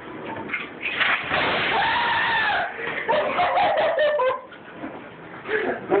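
A person letting out a high-pitched scream, one long cry about a second and a half, its pitch rising and falling, followed by shorter broken cries.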